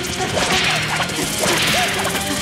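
Cartoon action sound effects: two swishing whooshes, one about half a second in and one near the end, with music underneath.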